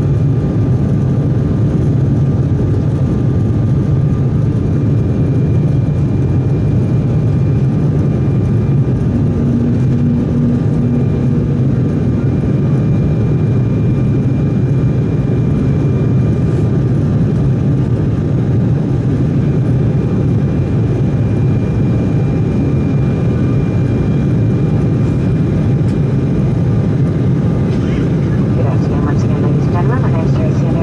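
Cabin noise of an Embraer 190 jet climbing after takeoff: a steady low rumble of airflow and its two underwing GE CF34-10E turbofan engines, with faint steady whining tones above it.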